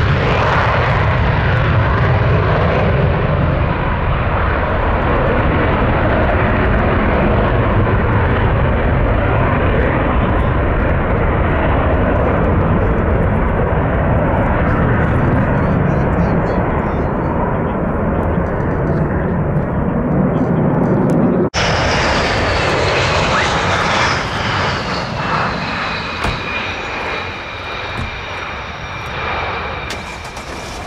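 F-15 taking off in full afterburner, its twin Pratt & Whitney F100 turbofans a loud, steady rumble that fades slowly as it climbs away. About two-thirds of the way through, the sound cuts abruptly to a quieter jet on the runway, with a high engine whine falling in pitch.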